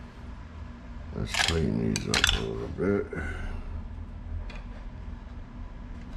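Light clinks and clicks of small tools and parts being handled at a rod-wrapping bench, mixed with a short muffled voice between about one and three seconds in.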